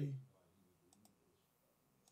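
The end of a spoken word, then a couple of faint computer mouse clicks about a second in.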